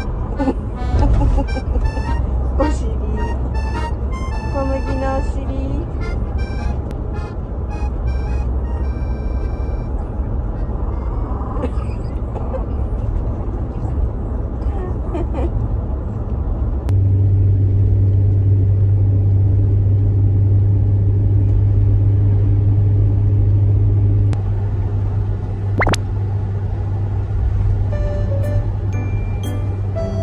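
Light background music over the steady low rumble of a moving camper van, heard inside the cabin. About halfway through the low drone grows louder and holds for several seconds, and a single sharp click comes near the end.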